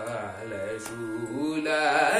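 Young male voice singing a Carnatic kriti in raga Vasantha, holding and bending a long ornamented vowel between sung words. The pitch rises toward the end.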